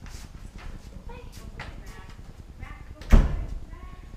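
A door slamming shut with a single loud bang about three seconds in, after faint voices.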